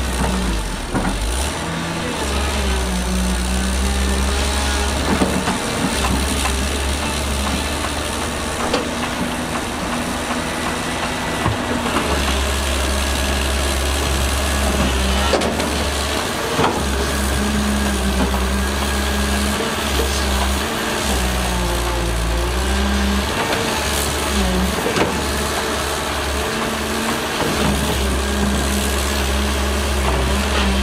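Diesel engines of a Shantui SD13 crawler bulldozer and a Zoomlion ZE210E hydraulic excavator running under load, the engine note rising and falling as they work. There are a few sharp knocks of stone and steel.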